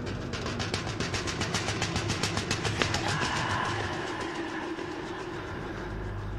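Rapid, evenly spaced rattling or tapping, about ten strokes a second, peaking a couple of seconds in and giving way after about three seconds to a held, higher tone that fades out.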